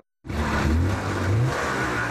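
A motor vehicle engine revving up. It cuts in sharply just after the start, its pitch rises over about a second, then it holds steady under loud mechanical noise.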